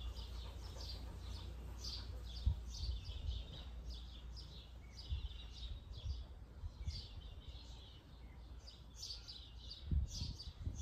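Garden birds chirping and twittering, a quick run of short high chirps several times a second, over a faint low steady rumble.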